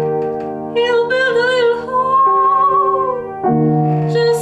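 A woman singing with vibrato over sustained upright piano chords. She holds a long high note in the middle, and a new chord is struck near the end.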